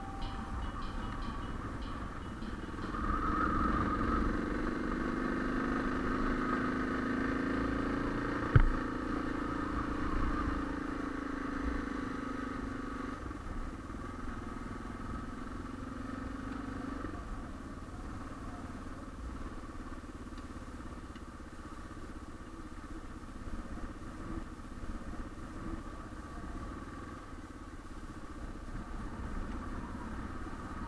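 Suzuki DR650's single-cylinder engine running as the motorcycle rides along a gravel road, louder for the first dozen seconds and then quieter. A single sharp knock comes about eight and a half seconds in.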